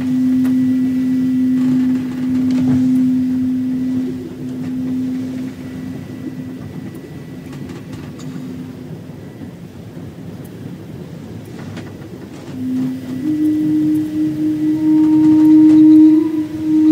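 Low Native American-style flute holding one long note that slowly fades away. After a pause a new note begins, steps up a little in pitch and is held, over a faint noisy background.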